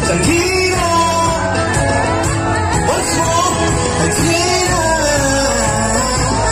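A live band playing on stage, with a singer carrying the melody over amplified electric guitar and a steady low beat.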